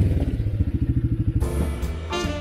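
Quad ATV fitted with rubber tracks driving past at low speed, its engine running with a rapid, even pulse. The engine sound stops about a second and a half in.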